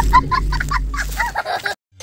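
A chicken clucking in a quick run of short, evenly spaced calls, about five a second, over a deep steady music bass that stops about three-quarters of the way through; the sound drops out briefly just before the end.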